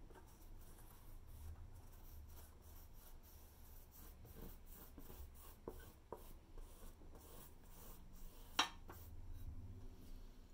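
Faint scratchy strokes of a paintbrush rubbing and scrubbing paint across a canvas with an uneven, textured surface. One sharp click comes near the end.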